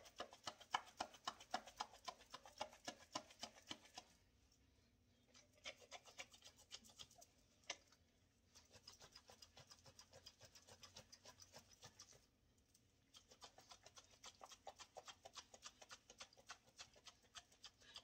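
Corn kernels and dressing being shaken in a lidded glass jar: fast, faint rhythmic shaking, about four or five shakes a second, in several bouts with short pauses about four seconds in and again about twelve seconds in.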